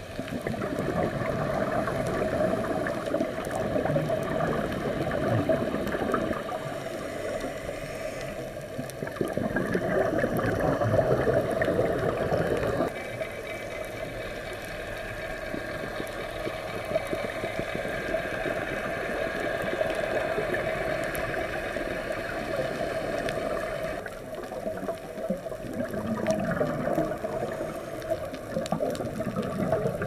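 Scuba regulator exhaust bubbles gurgling in long bursts, a few seconds each, with quieter stretches between breaths, heard underwater through the camera housing.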